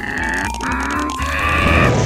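A cartoon character's strained grunting with effort, over background music with a long note that slowly rises in pitch.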